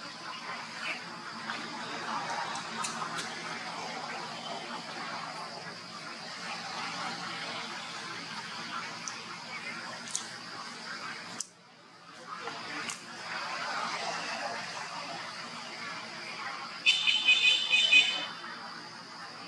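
Outdoor ambience with a steady high hum and faint, indistinct voices. About a second before the end, a loud, high-pitched cry with a clear tone rises above it.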